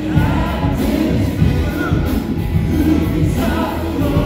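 Live church worship band: several singers in unison and harmony over keyboard and drums, with the sung lines rising and falling as they sing the chorus.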